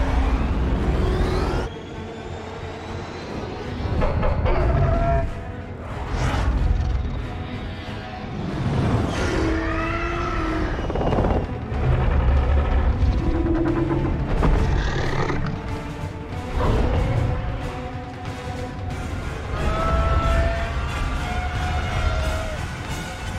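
Orchestral film music with long held notes, mixed with repeated heavy booms and rumbles of explosions, the first loud one right at the start.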